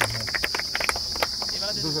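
Insects chirring steadily in one continuous high-pitched drone, with a few light clicks.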